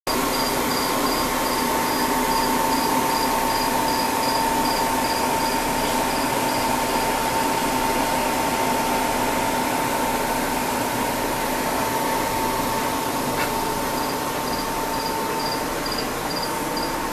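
A cricket chirping in a high, evenly spaced pulse that falls silent for several seconds midway and starts again near the end. Under it runs a steady machine hum and hiss with one constant tone.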